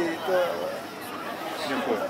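People talking: voices and chatter, with no other sound standing out.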